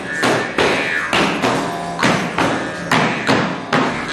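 Large hand-held shaman's frame drum beaten with a stick in a steady, driving rhythm, about two to three strikes a second.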